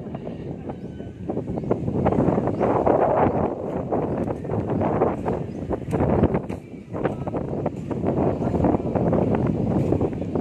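Wind buffeting the microphone in gusts: a loud, rough rumble that swells and dips from moment to moment.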